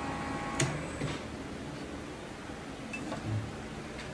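Faint hum of a shop machine that cuts off with a click about half a second in, followed by another light click and a couple of soft knocks.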